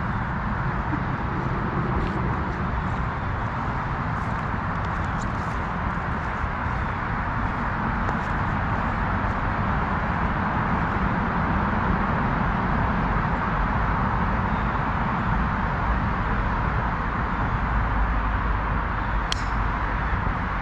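A golf club striking a ball from the tee: one sharp crack near the end, over a steady rushing background noise.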